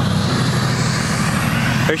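Truck engine running steadily, a low rumble.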